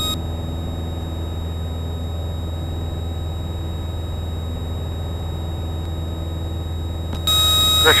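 Piper Cherokee's engine droning steadily at climb power, heard as a low hum through the cockpit headset audio. Near the end a hiss with a thin high whine switches on just before the pilot speaks.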